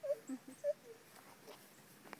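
Gibbon giving short, soft squeaking calls: about five brief pitched squeaks with small bends in pitch, packed into the first second, then only faint ticks.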